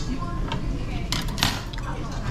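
Metal chopsticks and spoon clinking against bowls during a meal: a few sharp clinks, most of them about halfway through, over a steady low background hum.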